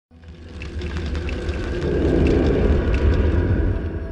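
Deep rumbling sound effect from a horror trailer's soundtrack, swelling to its loudest about halfway through and easing off near the end, with a few faint clicks over it.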